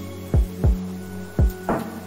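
Background music: sustained synth chords over a deep kick drum beat, the kicks coming in close pairs, with a sharper hit near the end.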